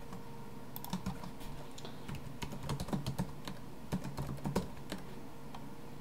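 Typing on a computer keyboard: a quick, irregular run of keystrokes starting about a second in and stopping about five seconds in.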